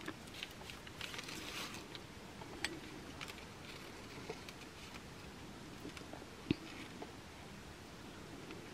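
Faint tabletop handling sounds: scattered light clicks and soft rustles as a foam cutout and coins are moved about and a hot glue gun is brought in, with a couple of sharper ticks.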